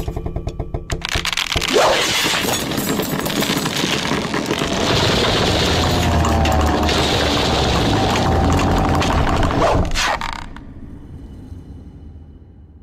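Soundtrack of an animated short film played through a video-call screen share: a loud, dense wash of sound effects with some faint music, dying away about ten seconds in.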